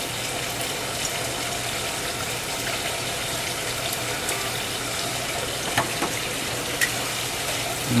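Steady background hiss, like running water or moving air, with a couple of faint clicks about six and seven seconds in.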